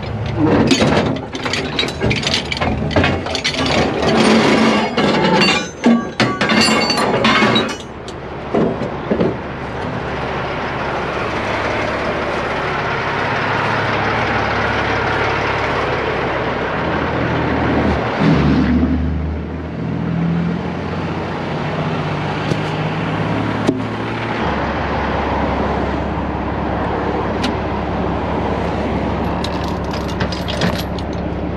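Heavy steel tow chains and shackles clanking and clinking as they are handled, for about the first eight seconds. After that a heavy truck's diesel engine idles steadily, with a vehicle passing on the road.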